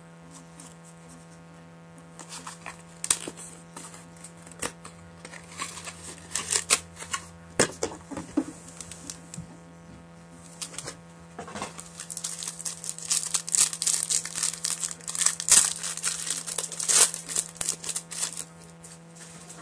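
Trading cards and their pack wrappers being handled on a table: scattered clicks and slides of cards at first, then a dense run of crinkling and rustling over the last six seconds or so.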